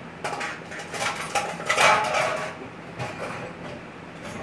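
A flurry of clattering and knocking, densest and loudest about two seconds in, then thinning out to a few scattered knocks.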